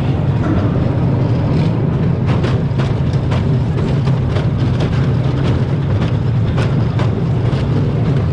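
Roller coaster train being hauled up its chain lift hill. The lift runs with a steady low drone, and from about two seconds in the anti-rollback ratchet clicks two to three times a second.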